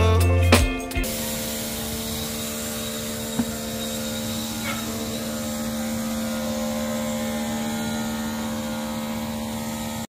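Electric pressure washer running with a steady, even hum, starting about a second in as music cuts off.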